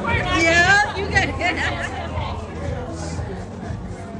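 Indistinct voices chattering over background music with a steady low bass, the voices strongest in the first couple of seconds.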